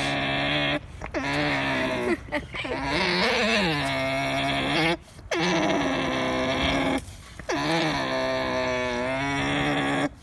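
A llama making a run of long, drawn-out, wavering vocal calls, about five in a row, each one or two seconds long with short breaks between them.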